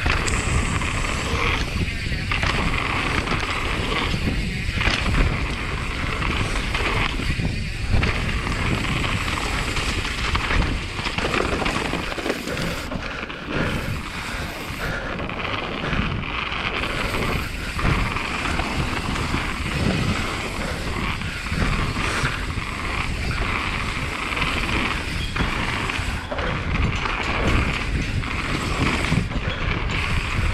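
Mountain bike riding fast down a gravel trail: tyres crunching and rumbling over loose stones, with wind buffeting the microphone. The noise is steady and rough, with no distinct single knocks.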